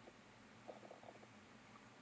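Near silence: room tone, with a few faint short ticks a little under a second in.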